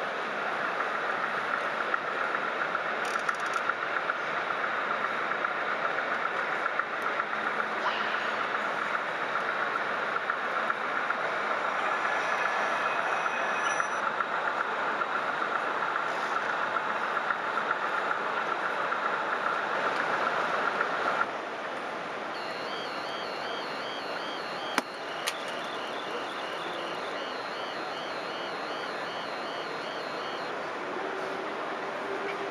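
Steady crackling running noise of model trains on a busy layout. After a sudden cut this gives way to a model level crossing's two-tone warbling alarm, repeating evenly while the crossing lights flash, with two sharp clicks partway through.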